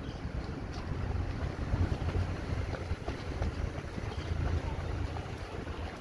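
Wind buffeting the microphone of a camera moving along a road, heard as an uneven low rumble.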